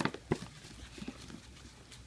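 A few faint, light knocks and clicks, spread over the first second or so, over a quiet room.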